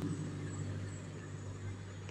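Quiet room tone with a low, steady hum.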